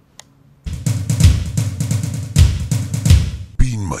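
Loud outro music with a driving drum-kit beat that cuts in about two-thirds of a second in, after a brief near silence and a single click.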